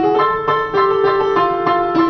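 J. Pramberger upright piano played solo: a new phrase comes in loudly right at the start, with quick repeated note attacks about five a second over held lower notes.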